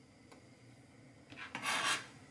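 A kitchen knife scraping across a cutting board, one short rasping scrape near the end, after a faint tap about a third of a second in.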